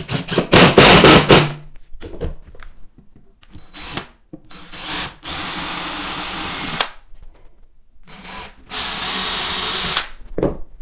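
A cordless Bosch impact driver hammering a screw down into a wooden floorboard for about a second and a half. Then a cordless DeWalt drill pre-drills pilot holes in the board, first in two short bursts and then in two steady runs of about a second and a half each, with a high whine.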